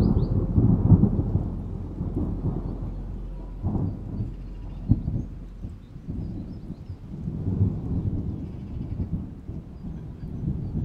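Low rumbling thunder rolling in slow swells, strongest about a second in and swelling again near the end, with rain falling.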